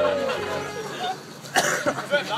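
A person coughing: one short, harsh cough about one and a half seconds in, with young people's voices and laughter around it.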